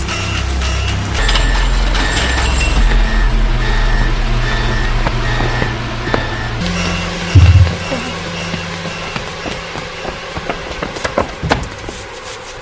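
Tense film score: short high beeps repeat over a low drone, with a deep boom about seven and a half seconds in. Scattered sharp clicks follow near the end.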